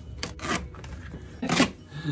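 Hands rubbing across a clear plastic storage bin as tape is smoothed down and the bin is shifted, giving two scuffing strokes: one about half a second in, a louder one about a second and a half in.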